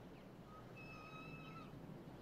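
Faint squeak of a metal garden gate's hinge as the gate swings, one steady, slightly rising tone lasting about a second.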